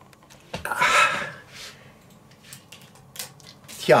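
Camera handling noise as the camera is turned around onto the speaker: a short rustle about a second in, then a few light clicks.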